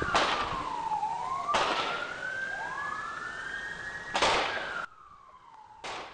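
Police car siren wailing in a slow, wide sweep, its pitch falling, then rising and falling again. Two loud short bursts of noise cut across it, about a second and a half in and about four seconds in, and it goes much quieter near the end.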